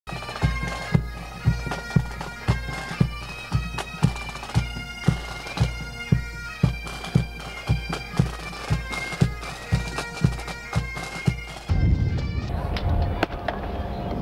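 Military pipe band playing: bagpipes over a bass drum beating steadily about twice a second. The music stops about twelve seconds in, leaving a low rumbling noise.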